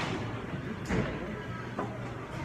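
Steady background noise of a large indoor games hall, with a short knock about a second in and a fainter click near the end.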